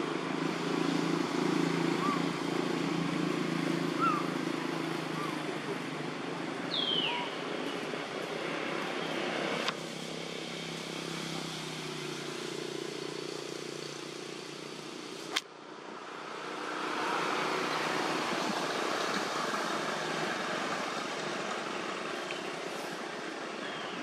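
Outdoor background noise, a steady hiss with indistinct distant voices. A short falling squeak comes about seven seconds in, with a few faint chirps early on. Two sharp clicks fall near the middle, the second followed by a brief drop in level.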